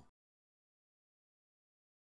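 Silence: the sound track is blank, with no audible sound.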